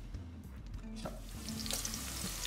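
Sliced onions sizzling in hot oil in a steel pot, the frying coming in about a second in and growing, under soft background music.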